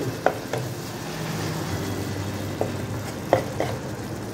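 Steel spoon stirring simmering fish gravy in a wok-shaped pan (kadai), clinking against the pan a few times over a steady sizzle.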